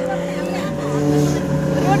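People talking, over a steady low drone whose pitch shifts in steps.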